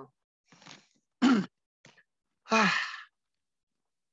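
A person clearing their throat: a short sharp vocal rasp just after a second in, then a longer, rougher one about a second later, with a faint breath before them.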